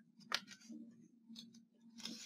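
Faint handling of a paper picture book being moved and its page turned: a few short, soft paper rustles and clicks.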